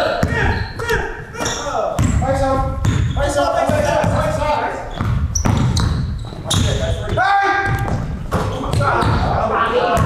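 Basketball dribbled on a hardwood gym court, with players shouting to each other. The sound echoes around a large hall.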